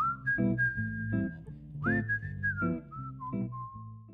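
Whistled tune over a strummed acoustic guitar, about two strums a second, the melody gliding up and down.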